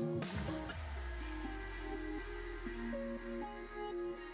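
Background music: a few light percussive hits in the first second, then held notes over a steady bass.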